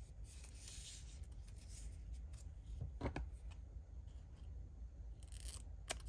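Quiet handling of a strip of plastic film-strip sticker, with a short soft sound about halfway through and a sharp snip of scissors cutting the strip just before the end.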